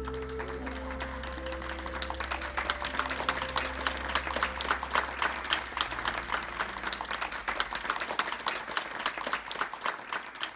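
Small audience applauding by hand, the clapping starting about two seconds in and growing denser, over slow background music of long held notes and a low drone that fades out about halfway through.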